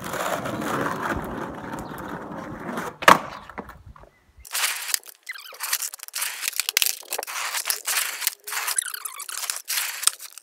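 Skateboard wheels rolling on asphalt, with one loud, sharp wooden clack about three seconds in. After a brief break the rolling continues, thinner and full of rapid small clicks and knocks.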